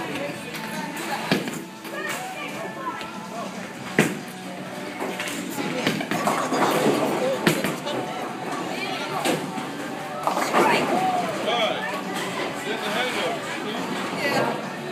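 Bowling alley din: background music and voices, broken by several sharp knocks and clatters of bowling balls and pins, the loudest about four seconds in.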